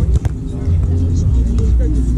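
Wind buffeting the microphone with a steady low rumble, two sharp knocks close together just after the start, and faint players' voices.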